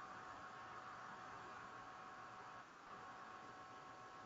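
Near silence: a faint steady hiss with a thin hum, briefly dropping out about two and a half seconds in.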